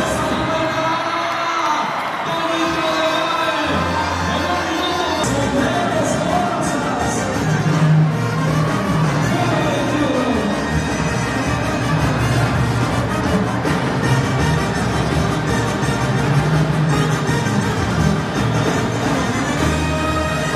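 Brass band music playing steadily over an arena crowd cheering and shouting.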